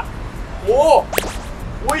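A sharp whip-crack swish about a second in, the kind of sound effect laid over an edited vlog, with a second, shorter crack near the end.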